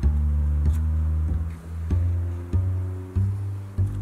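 Background music with a plucked bass line stepping from one low note to the next about every half second.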